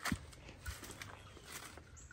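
A few faint, short clicks and light rustling from hands handling small plastic parts and a hand tool, the clearest click just at the start.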